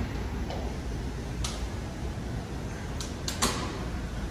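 Steady low hum of an airport terminal's background noise, with a few faint clicks and taps scattered through it.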